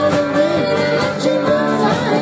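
Live band playing a song on electric guitar and drums, with a woman singing.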